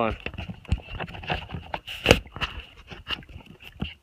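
Irregular clicks and knocks of a phone being handled and screwed onto an adapter on a paddle, the fumbling right at the phone's microphone; the loudest knock comes about two seconds in.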